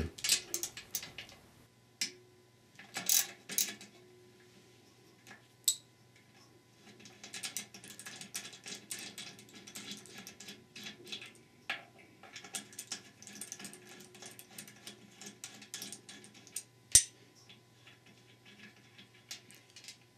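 Socket ratchet clicking in long, rapid runs as a 13 mm socket on an extension backs out a hollow center-support bolt from an E4OD/4R100 transmission case, with a few scattered clicks and knocks before and one sharp click near the end.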